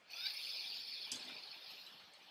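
A slow inhalation through one nostril in alternate-nostril breathing (nadi shodhana), the other nostril held shut: a soft hiss that fades away over about two seconds.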